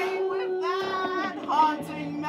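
Live improvised music: a woman singing wordless, sliding vocal phrases over a steady held keyboard note, the held note dropping away a little after a second in.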